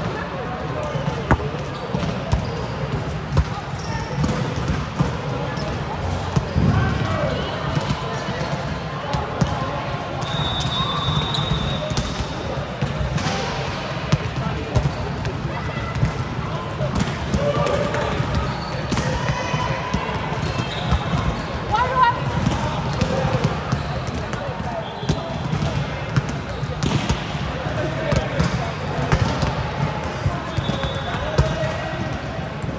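Volleyballs being hit and bouncing on a hard indoor court, irregular sharp smacks scattered through, with players' voices echoing in a large sports hall.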